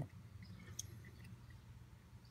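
Quiet background with a steady low hum and a few faint clicks about three-quarters of a second in, from handling a wire and its paper tag.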